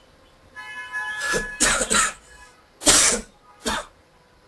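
A person coughing several times in a row, a short cluster of coughs followed by two more about a second apart near the end.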